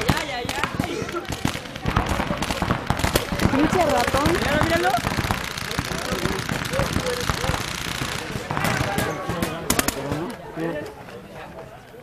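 Paintball markers firing in rapid strings of shots, several players at once, with shouting voices over the gunfire. After about eight seconds the firing thins to a few separate shots and dies down near the end.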